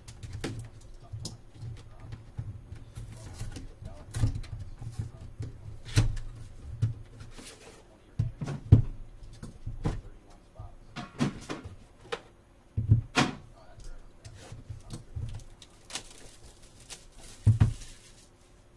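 Cardboard trading-card boxes being handled on a tabletop: irregular knocks, taps and rustles, with louder thumps about nine, thirteen and seventeen seconds in.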